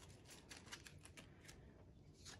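Near silence with faint handling of polymer Canadian five-dollar bills: a few soft crinkles and taps as the notes are shuffled and set down.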